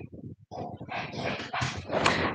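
A dog barking, a quick run of short barks, about four or five a second.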